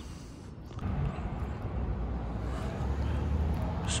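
A low background rumble that starts about a second in and grows gradually louder.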